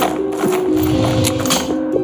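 Background music of sustained notes, with a few sharp metallic clinks and rattles of a heavy chain being handled across a wooden trapdoor.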